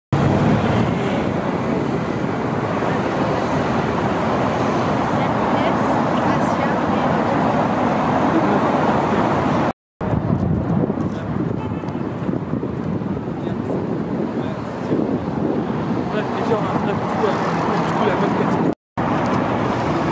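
Busy city street ambience: steady traffic noise mixed with a murmur of people's voices. The sound cuts out abruptly twice, for a fraction of a second, once about halfway through and once near the end.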